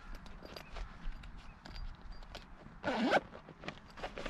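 Zipper on a small fabric fire-kit pouch being pulled closed in a run of short scratchy ticks, with the fabric rustling as it is handled.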